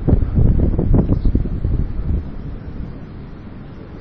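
Irregular low rumble and buffeting on the microphone, strongest in the first two seconds and dying down.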